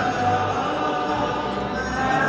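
Cape Malay men's choir singing a Malay-choir song with acoustic guitar accompaniment, sustained sung notes over a low bass line.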